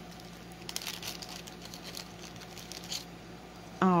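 Small plastic baggie crinkling and rustling as a carded wooden button is slid out by hand: faint, scattered crackles and light clicks that die down near the end.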